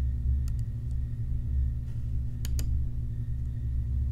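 Computer mouse clicks over a low steady hum: a faint click about half a second in, then two sharp clicks close together about two and a half seconds in.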